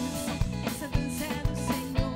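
Live band playing carimbó-style music, with an electric guitar picking over drums keeping a steady beat.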